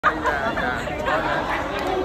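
Several people talking close by at once: overlapping chatter, with no other distinct sound.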